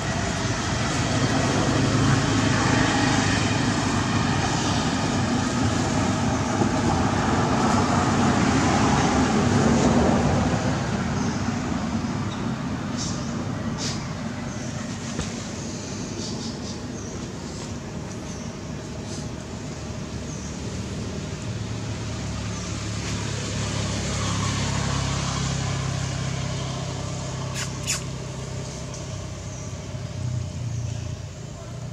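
Road traffic: a motor vehicle's engine running with a steady low hum. It is loudest for the first third, eases off, then swells again towards the end, with a few short clicks in between.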